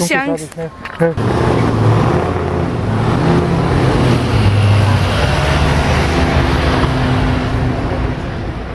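City road traffic, with a vehicle engine droning steadily close by over general road noise, starting suddenly about a second in.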